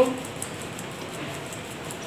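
Icing sugar being shaken through a metal mesh sieve into a plastic bowl: a soft, steady, even patter.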